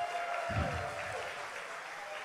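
Congregation applauding the children on stage, a steady, moderately quiet patter of clapping in a large room.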